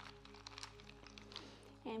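Soft background music holding a steady chord, with a few faint clicks of ice cubes shifting in a bowl around the hands.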